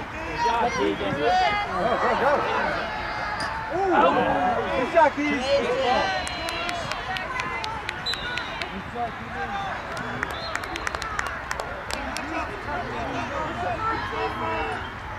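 Indistinct shouting and calling from players and spectators across a lacrosse field, several voices overlapping, loudest in the first half. In the second half comes a run of sharp, quick clacks.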